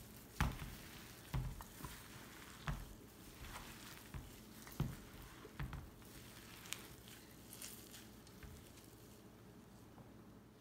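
Gloved hands mixing boiled potato chunks with chopped herbs and spices in a stainless steel bowl: faint, irregular soft squishes and thuds about a second apart, with a few light clicks. The thuds thin out after about six seconds.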